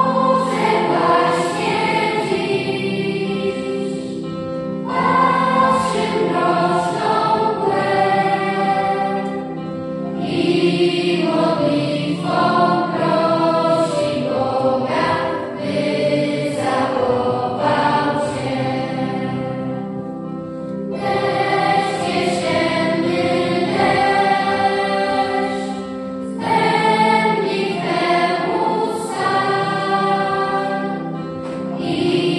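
Children's choir singing with electronic keyboard accompaniment. The song moves in phrases of several seconds, with brief breaks between them, over steady held keyboard notes.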